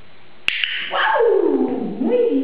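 A single sharp click, typical of a training clicker marking the moment the dog holds the toy, followed straight away by a long pitched voice that slides down from high to low.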